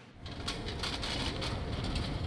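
Wheeled metal ball cart full of basketballs rolling over a wooden gym floor: a steady rumble of the casters with faint rattling, starting just after the beginning.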